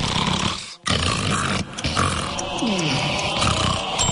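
A cartoon character straining hard: a loud, rasping vocal effort of grunting and growling, broken by a short pause just under a second in.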